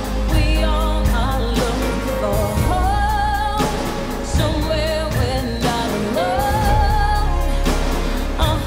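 Pop ballad with a woman singing long, sliding vocal notes with vibrato over steady backing music.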